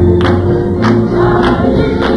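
Gospel choir singing with band accompaniment over a steady beat of a little under two strokes a second.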